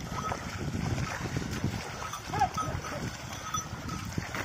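A pair of bullocks pulling a loaded cart through a flooded paddy field: hooves and cart wheels splashing and sloshing through water and mud, with scattered knocks. A short, sharp call sounds about halfway through and is the loudest moment.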